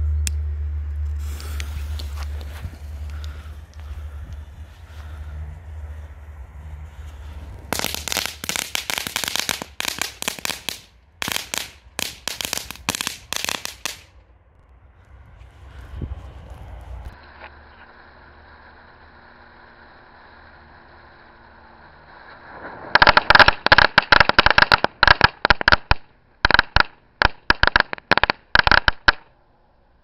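A firecracker string going off as a fast, irregular run of sharp bangs, twice: for about six seconds starting about eight seconds in, and again for about six seconds near the end.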